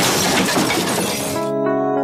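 Car crash sound effect: a sudden crash with shattering glass that lasts about a second and a half. Soft music with held notes comes in as it dies away.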